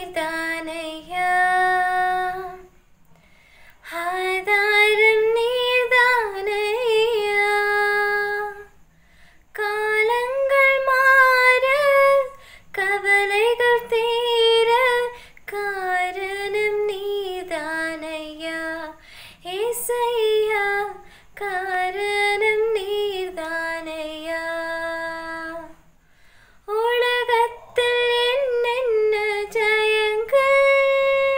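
A young woman singing a gospel song solo and unaccompanied, in phrases a few seconds long separated by short pauses for breath.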